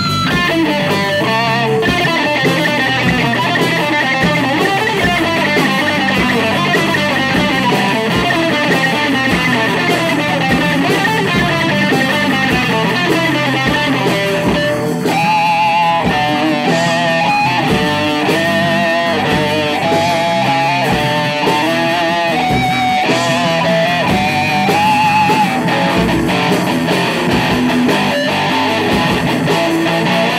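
Live rock band playing loud: electric guitar lines over bass guitar and drums. About halfway through there is a brief drop, then the guitar starts a new repeating figure.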